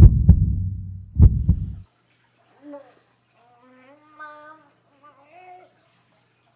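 Heartbeat sound effect: two deep double thumps, about a second and a quarter apart, which cut off sharply about two seconds in. Faint voice-like sounds follow.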